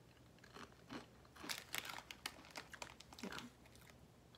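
A person chewing a mouthful of small crunchy cheese-flavoured Torcida corn snacks close to the microphone: a rapid string of sharp crunches over about three seconds.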